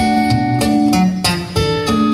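Guitar music: a run of plucked melody notes over lower bass notes.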